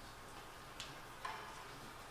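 Quiet pause in the hall after the violin stops playing: faint room tone with two short, soft rustles about half a second apart, a little after a second in.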